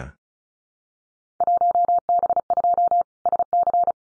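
Computer-generated Morse code at 35 words per minute: a single steady tone keyed into short and long beeps, starting about a second and a half in and ending just before the end. It repeats the Field Day contest exchange 1B2 South Carolina that was just spoken.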